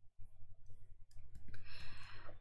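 A pause between speech: a few soft clicks over a steady low electrical hum, then a breath drawn in near the end.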